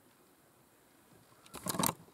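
Quiet for over a second, then a short burst of crunching, rustling knocks near the end as the camera is handled and moved away from the nest.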